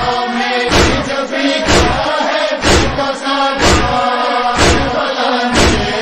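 Noha backing voices holding a chanted drone between the reciter's lines, with rhythmic thumps about once a second, the chest-beating (matam) beat that keeps time in a noha.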